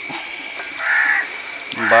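A single short, harsh bird call about a second in, over a steady background hiss.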